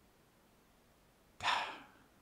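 A man's single sigh, a breathy exhale about one and a half seconds in that trails off quickly, out of frustration.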